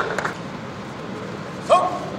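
A single short, sharp shout near the end, over steady background noise in a sports hall; a couple of light clicks come at the start.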